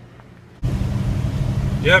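Steady low engine and road drone inside a moving vehicle's cabin, cutting in abruptly about half a second in after a faint, quiet stretch.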